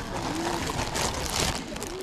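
A clear plastic bag full of Lego bricks rustling and crinkling as it is handled, loudest about a second in, with faint voices in the background.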